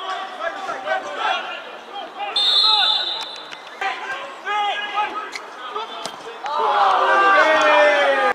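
Players and spectators shouting across a football pitch. A sharp, steady referee's whistle blast of about half a second comes near the middle, with a few thuds of the ball being kicked. Loud, overlapping shouting swells near the end and cuts off abruptly.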